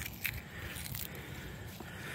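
Fresh jewelweed stems and leaves being crunched up in a hand, a few small crackles near the start and then faint rubbing, as the plant is mashed wet to release its juice for a nettle-sting remedy.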